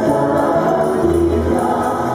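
Chilean folk music for a handkerchief couple dance, in the style of a cueca: several voices singing together over guitar accompaniment.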